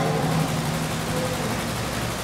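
A steady low hum with an even hiss behind it.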